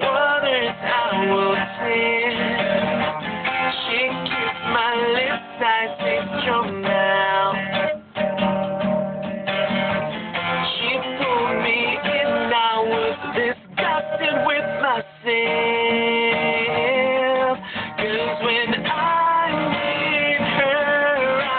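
A man singing to his own strummed acoustic guitar, the voice carrying the melody over steady chords.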